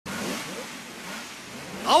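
A motor vehicle engine sound that fades over the first second and a half. Near the end a voice sweeps up in pitch as it begins calling out the title 'Aoki Motor Station'.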